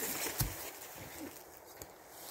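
A dull knock of a wooden pole about half a second in, followed by faint rustling and light clicks as the pole is shifted over dry pine-needle ground.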